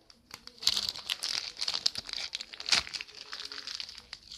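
Plastic collectible sticker packet crinkling and crackling as it is handled and opened by hand, starting about half a second in.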